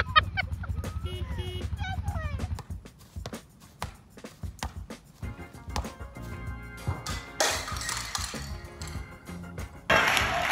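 Voices calling out over a low rumble for the first couple of seconds, then background music with a few scattered knocks.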